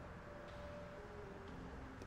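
Quiet pause: faint low steady hum and room noise, with a few faint held tones.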